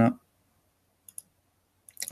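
Computer mouse clicking: a quick double-click about a second in and another faint click near the end.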